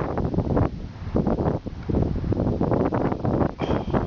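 Wind buffeting the microphone: a loud, uneven low rumble that swells and drops in gusts.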